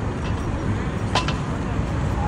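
Roadside traffic ambience: a steady low rumble of vehicles on the road, with a short sharp sound about a second in.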